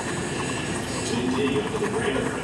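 A metal key scraping steadily across a scratch-off lottery ticket, rubbing off its latex coating.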